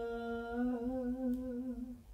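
A bolero singing voice played back from the vocal track with its reverb, holding one long note that settles into a slow vibrato about halfway through and fades out near the end.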